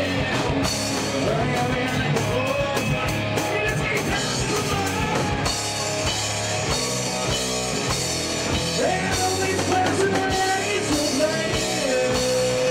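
Live rock band playing at full volume: electric guitar, drum kit and a singer's lead vocal, with held sung notes about nine seconds in and near the end.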